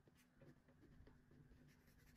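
Faint scratching of a ballpoint pen drawing strokes on paper, a few short strokes, over a faint steady hum.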